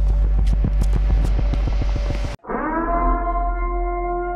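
A dense run of rapid sharp cracks over a heavy bass rumble, cut off abruptly about two and a half seconds in. After a short gap, a long horn-like emergency-broadcast siren tone swells up in pitch and then holds steady.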